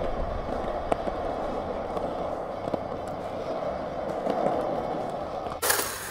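Skateboard wheels rolling steadily over concrete, with a few light clicks along the way. Near the end a sudden loud burst of noise cuts in.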